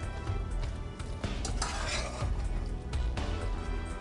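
A metal slotted spoon stirring thick, cheese-coated pasta in a pot, with small clinks and scrapes of the spoon against the pot, over soft background music.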